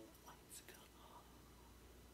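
Near silence, with a faint whisper about half a second in.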